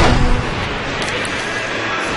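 Large arena crowd applauding and cheering, loudest right at the start and then holding steady.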